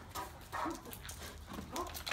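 Footsteps of a person and a Great Dane walking on brick pavers: a run of light, uneven taps, with a faint voice underneath.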